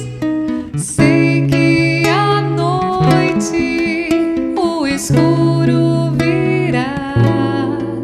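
A woman singing a slow worship song to acoustic guitar accompaniment, the guitar holding low notes under her gliding vocal line.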